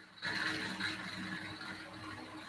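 Faint steady background noise with a low hum, picked up by an open microphone on a video call. It cuts in just after the start.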